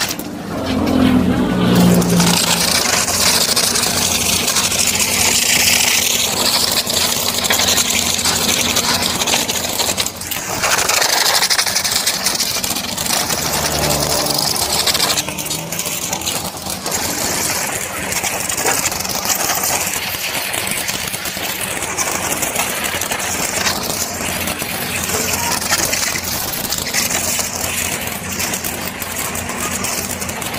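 High-pressure water spray hissing from a pressure washer's gun onto a motorcycle and wet pavement, the hiss swelling and thinning as the jet moves, over the steady hum of the washer's motor.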